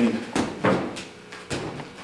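Three short rustles and knocks from gi fabric and bodies shifting as a grappling pair moves out of a single-leg takedown grip.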